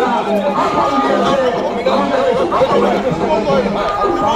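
Several men arguing at once, their voices overlapping.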